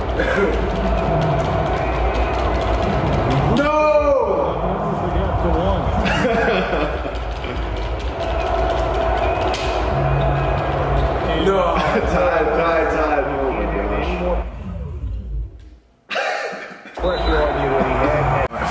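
Basketball video game audio from the TV: commentary voices over arena crowd noise and music. The sound drops out briefly near the end.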